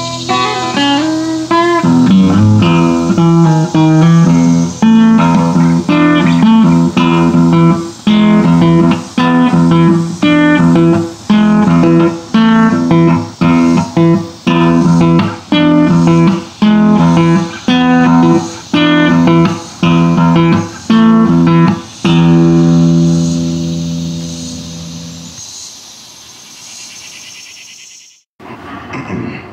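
Solo acoustic guitar playing a chord pattern that is cut short in a steady rhythm, a little more than once a second. Near the end it settles on a final chord that rings out and fades away, closing the song.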